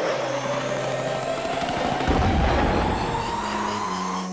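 Battle sound effects: a single whine rising slowly and steadily in pitch, over a crackling noise with a low rumble that swells about halfway through.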